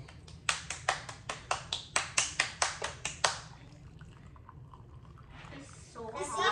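A child clapping her hands: a quick run of about fifteen sharp claps, around five a second, stopping after about three seconds.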